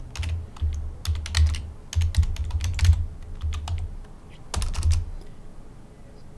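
Typing on a computer keyboard: quick runs of keystrokes in several bursts with short pauses, each run carrying a dull low thump. The typing stops about a second before the end.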